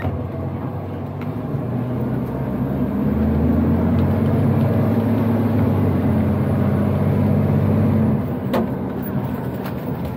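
Acco truck's diesel engine heard from inside the cab. It goes up to a steady, louder, higher run about two to three seconds in, holds there, and drops back about eight seconds in. A brief click comes just after the drop.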